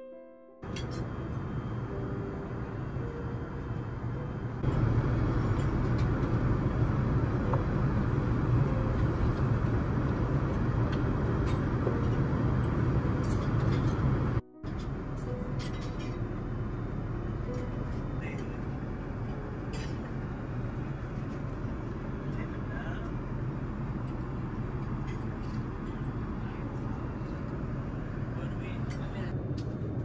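Steady cabin noise of an Airbus A380 in cruise, a deep rushing drone with faint voices under it. It is louder for the first third, then drops abruptly to a slightly quieter, even drone about halfway through.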